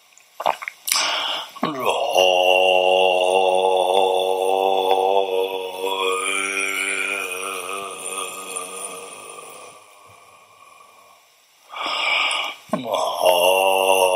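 A Tibetan Buddhist prayer chanted on a low, steady pitch, each syllable drawn out into one long held line lasting several seconds. After a short pause for breath near the end, the next chanted line begins.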